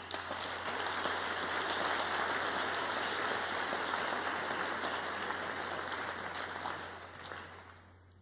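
Audience applauding. It starts at once, holds steady, and dies away near the end.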